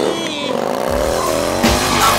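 Motorcycle engine revving, its pitch dipping and then rising, mixed with music whose deep bass comes in about a second in.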